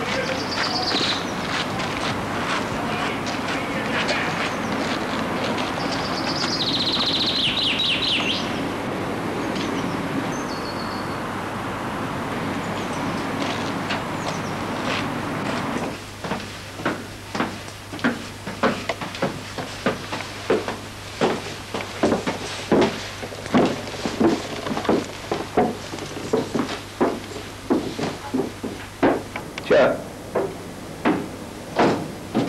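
Outdoor ambience with birds chirping now and then and footsteps crunching on gravel. About sixteen seconds in, it changes to footsteps climbing stairs inside a church tower, about two steps a second, over a low steady hum.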